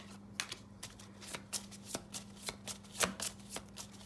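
A deck of zodiac oracle cards being shuffled by hand: a string of quick, irregular card snaps, several a second.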